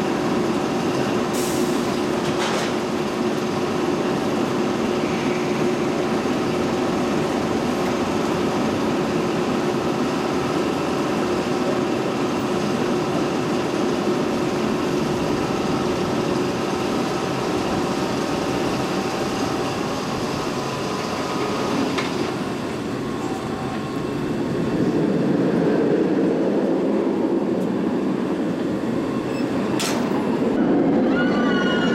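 Roller coaster chain lift running with a steady mechanical hum and rattle as a Bolliger & Mabillard inverted coaster train climbs the lift hill. About three-quarters of the way through the steady hum stops, and a louder rushing rumble from the train on the track builds.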